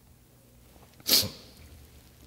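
A single sharp sneeze about a second in, with a short echoing tail.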